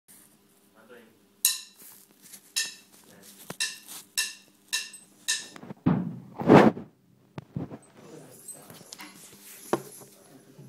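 A light ringing tap repeated about twice a second, eight times in a row, then a couple of heavier thumps near the middle.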